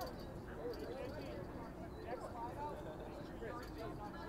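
Faint, distant voices of players and onlookers across an open playing field, over a steady low background noise.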